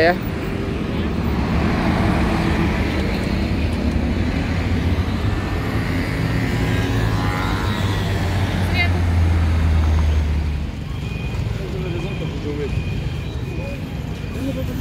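Road traffic in a jammed city street: cars running close by at slow speed, with a low engine rumble from a nearby vehicle that builds and then drops away suddenly about three-quarters of the way through.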